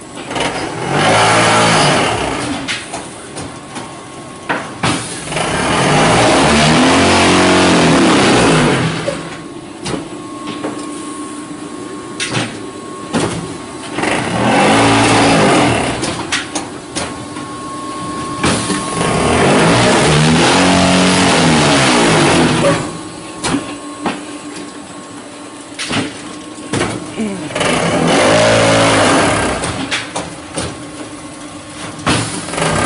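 Automatic fly ash brick making machine cycling: its vibration motors run in loud bursts that rise and fall in pitch, a short burst then a longer one of about four seconds, repeating about every 13 seconds. Between bursts a hydraulic power unit hums steadily, with clicks and clanks from the moving mould and pallets.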